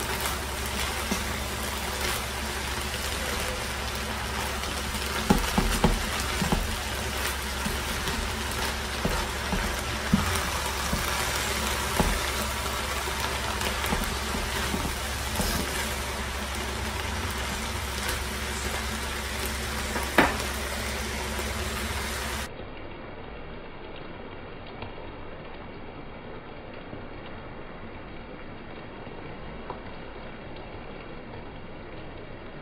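Shredded cabbage coleslaw mix frying in a nonstick skillet as it is stirred, with a few sharp clicks of the utensil against the pan. The sound drops quieter and duller for the last several seconds.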